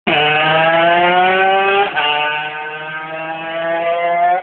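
Aprilia RS50's 50 cc two-stroke single-cylinder engine running at high revs under way, its pitch climbing, with a short break just before two seconds, then holding and rising a little.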